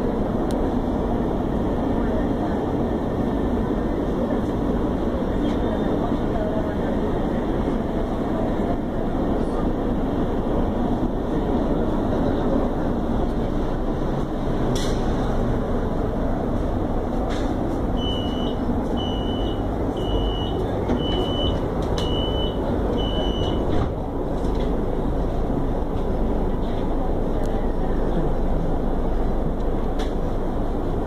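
Interior running noise of a CSR electric multiple unit at speed: a steady rumble of wheels on rail and traction equipment. About two-thirds of the way through, six short high beeps sound about a second apart.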